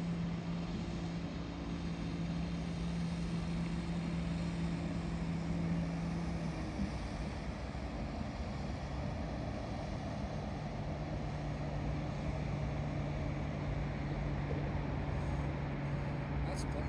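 Small motorboat's outboard engine droning steadily out on the river, dropping slightly in pitch about seven seconds in, over a steady outdoor hiss.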